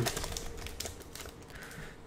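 Foil wrapper of a Magic: The Gathering booster pack crinkling and crackling as it is torn open by hand: a run of quick, soft crackles that thin out toward the end.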